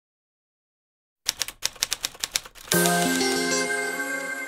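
Silence, then a quick run of typewriter key clicks, about six a second, for just over a second. The song's intro music then comes in with held pitched notes.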